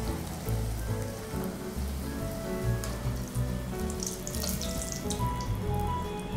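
Stuffed fish kochuri deep-frying in hot oil in a kadai: a steady soft sizzle with fine crackling, under background music.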